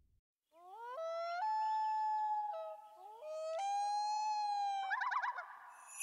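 A drawn-out howl in two long calls, each sliding up in pitch and then held steady, ending in a quick warbling trill near the end.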